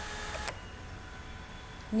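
Steady background hiss with faint high steady tones, the room tone of a home voice recording, which drops off abruptly about half a second in to a quieter hiss.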